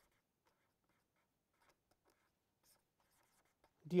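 Faint scratching of a felt-tip pen writing on paper in a run of short, irregular strokes.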